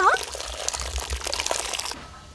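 Hot water from boiled young-radish stems streaming through a woven bamboo basket and splashing into the water below: a steady rush of falling and splashing water.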